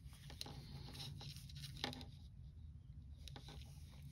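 Faint handling sounds of knitting needles and yarn as stitches are picked up along a knitted edge: a few soft, scattered clicks and light rustles over a low steady hum.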